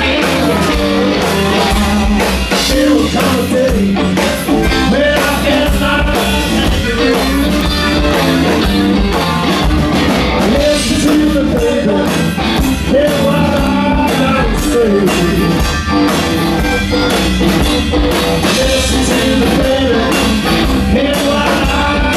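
Live blues-rock band playing loud: electric guitar, bass guitar and drum kit driving a steady beat, with a wavering melodic lead line over it.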